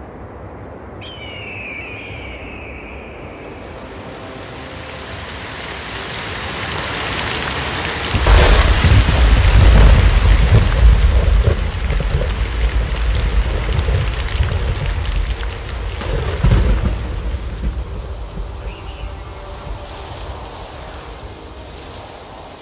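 Thunderstorm: steady rain with thunder. The rain builds, then a deep, loud thunder rumble breaks about eight seconds in and rolls on. A second clap comes around sixteen seconds, and the rumble dies away.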